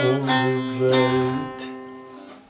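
Long-necked bağlama (saz) strummed with a pick, playing a Turkish folk tune (türkü). A couple of last strokes ring on and die away in the second half.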